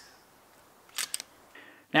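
The fading tail of an air-rifle shot, then about a second in a quick cluster of three sharp metallic clicks from the FX Dynamic PCP air rifle's action, the side lever being worked to re-cock it.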